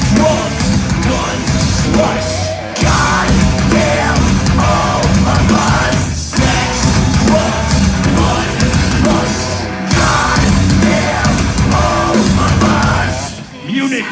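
A heavy metal band playing live through a club PA, recorded from the crowd: distorted guitars, drums and a yelled vocal. The riff breaks off briefly three times, and the song drops out just before the end.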